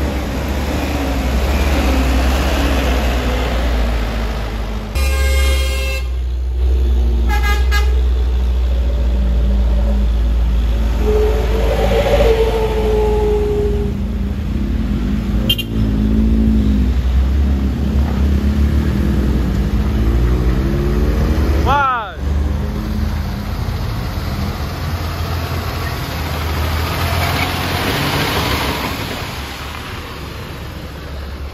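Heavy trucks' diesel engines labouring on a steep climb, with a steady deep rumble. Short vehicle horn toots sound a few seconds in and again about two seconds later.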